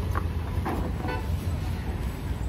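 A steady low rumble of background noise with faint voices in the distance.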